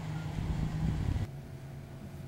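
Low, steady rumbling background noise that cuts off abruptly a little past halfway, replaced by a quieter steady hum.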